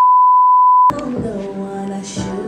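A steady, loud, high-pitched test-tone beep, the kind played with colour bars, that cuts off suddenly just under a second in. Music takes over at the cut.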